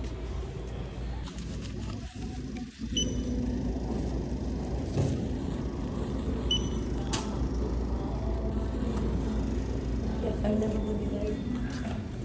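Shop-floor ambience in a farm-supply store: a steady low rumble with indistinct background voices. Two short, high electronic beeps, about three seconds in and again near six and a half seconds, like checkout barcode-scanner beeps.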